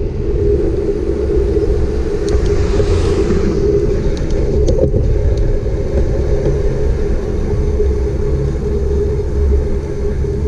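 Steady rumble of wind on the microphone and bicycle tyres rolling on asphalt while riding along, with a hiss that swells and fades about two to four seconds in and a few faint clicks.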